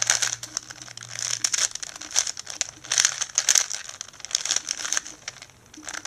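Layers of a plastic 4x4x4 puzzle cube being turned quickly by hand, a dense run of plastic clicks and clacks in bursts, easing off near the end, as a parity algorithm is worked through.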